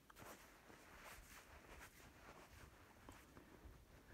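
Near silence: faint outdoor background with a few soft, brief rustles.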